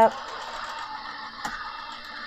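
Crafter's Companion Gemini Junior electric die-cutting machine running, its motor and rollers drawing a cutting-plate sandwich with a word die through to cut it. A steady motor noise, with a faint click about one and a half seconds in.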